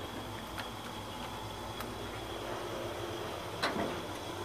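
Hitachi traction elevator car (1977, modernized mid-1990s) heard from inside: a steady low rumble and hum with a few faint clicks. Near the end there is a sharper click and the low rumble drops away.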